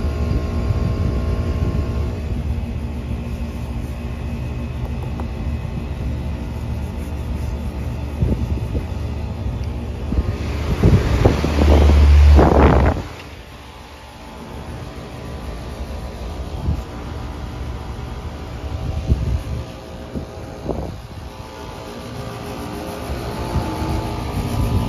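Outdoor air-conditioner condensing unit running with a steady low hum. A loud rustling, brushing noise builds up about halfway through and cuts off suddenly, the loudest thing here, as the microphone rubs against the unit's cabinet.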